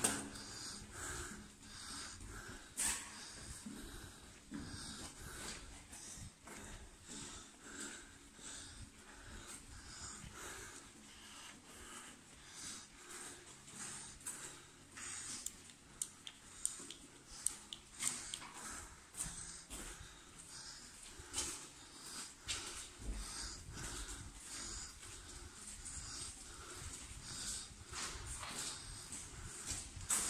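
Heavy breathing and irregular footsteps of someone walking uphill on foot.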